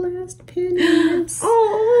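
A woman's drawn-out, sing-song exclamation of delight without clear words, held on two long notes, the second higher, starting about half a second in.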